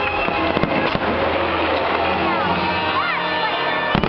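Fireworks bursting with sharp bangs, about half a second in, about a second in and again at the end, over a fireworks show's musical soundtrack played loud through loudspeakers.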